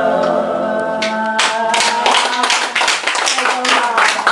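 A small group of mixed voices singing unaccompanied ends a song on a held note. About a second and a half in, the group breaks into applause.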